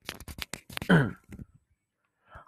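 Quick, irregular clicks and scrapes close to a wired earphone microphone as it is handled, with a man saying "okay" about a second in.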